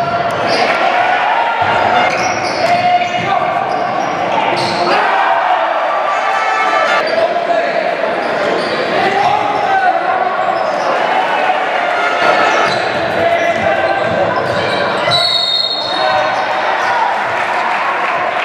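Live game sound of a basketball game in a sports hall: a ball bouncing on the hardwood and players' and spectators' voices, echoing in the large hall.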